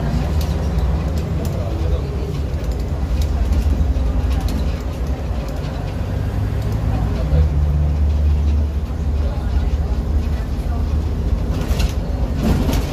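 Diesel engine of a Jelcz 120M city bus running while the bus is under way, heard from inside the cabin as a steady low drone, with occasional clicks and rattles from the bus body.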